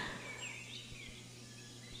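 Faint bird chirps, a few short calls in the first half that fade away, over a low steady hum.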